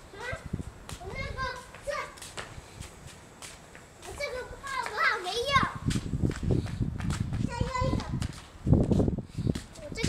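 A young child's excited wordless shouts and squeals in play, in two bursts. In the second half come heavy low thuds and rumble.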